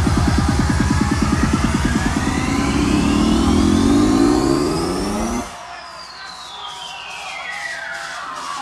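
Psytrance played over a festival sound system in a live DJ set: a fast rolling bassline under a rising sweep. About five and a half seconds in, the bass cuts out into a breakdown with a long falling sweep and light ticking percussion.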